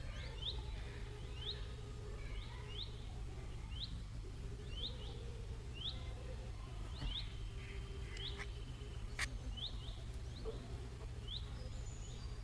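Faint, short bird chirps repeated about once a second, sometimes in quick pairs, over a low steady hum, with a single sharp click about nine seconds in.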